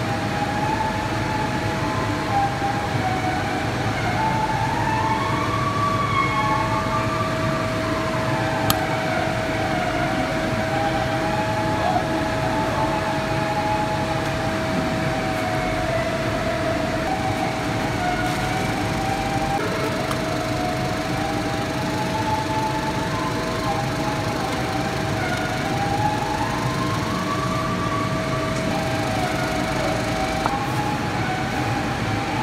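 Steady machine whine in a factory hall, with a higher tone slowly rising and falling above it.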